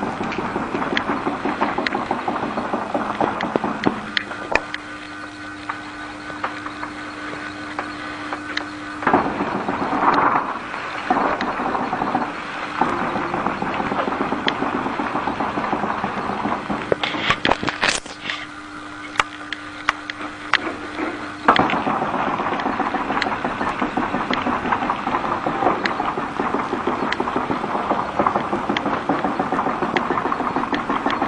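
Motor-driven rollers of a 63-inch cold laminating machine running, a dense clicking mechanical noise. It quietens twice for a few seconds, and a low steady hum shows through then.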